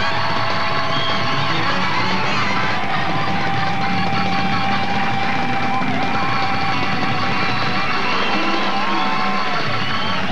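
Live rock band playing: electric guitars, drums and keyboards.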